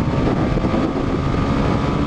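Indian FTR 1200 V-twin motorcycle ridden at speed and gaining speed, its engine half-buried under a loud, steady rush of wind on a helmet-mounted camera.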